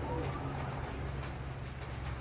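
A dove cooing in the first half second or so, over a steady low hum.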